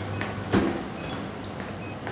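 A single dull thump about half a second in, then steady background noise with faint short high beeps a little under a second apart.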